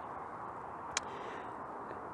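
Steady low noise of a gas broiler's burner running at full heat, with one short light click about a second in.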